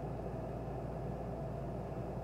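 Quiet, steady low hum with faint hiss, with no distinct sound standing out.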